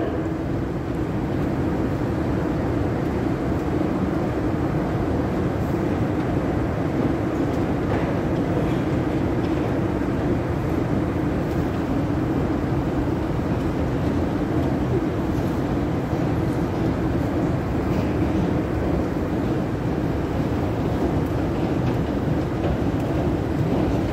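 Long deep-level metro escalator running: a steady, even mechanical rumble from the moving steps and drive, heard from on the steps.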